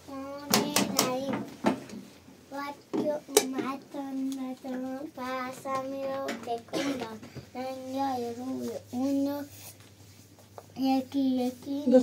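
A young child's voice speaking in a sing-song way, in short phrases with some drawn-out notes. There are a few sharp clicks in the first second and one more a few seconds in.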